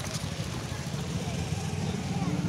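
A motor vehicle's engine running steadily with a low, rapidly pulsing rumble, and faint voices in the background.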